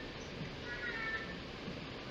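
A cat meowing faintly near the middle, picked up through a video-call microphone.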